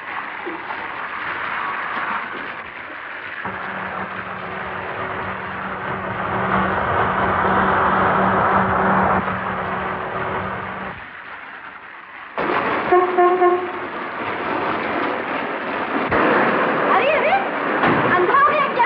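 Heavy rain falling on a road, with a car engine running as a low steady drone from about three seconds in to about eleven seconds. A car horn sounds for about a second and a half just after twelve seconds, and near the end a voice cries out.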